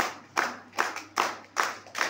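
Hands clapping in a steady, even beat, about two and a half claps a second.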